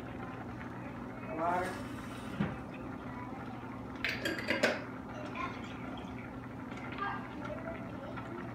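A glass pasta-sauce jar handled over a stainless steel pot, with a quick cluster of sharp clicks about halfway through as the jar's metal lid is twisted open. A low steady hum runs underneath.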